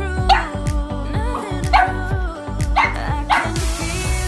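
Background pop music with a steady beat, over which a small dog barks sharply four times in short yips.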